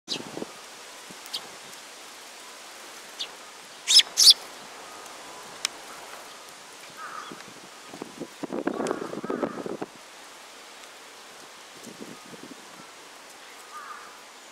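Eurasian tree sparrows giving a few short, sharp chirps, the loudest a quick pair about four seconds in. A brief rustling noise a little past the middle.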